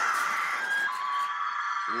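A woman's long, high-pitched scream from a horror film, held on one pitch and dropping a little lower about a second in.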